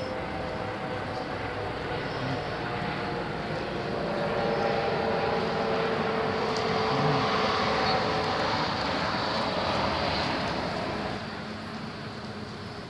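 A distant engine drone with a low steady hum. It swells from about four seconds in and fades away near the end, like a motor passing by.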